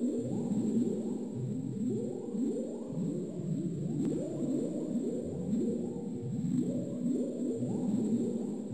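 Soundtrack of overlapping electronic tones that keep swooping upward and blurring into one another, like an echoing whale-song or sonar effect.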